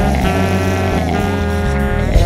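Instrumental passage of a ska-punk band recording: sustained electric guitar chords over bass, the chord changing a few times.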